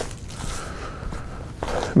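Footsteps of a person walking over dry, leaf-strewn ground, faint and irregular.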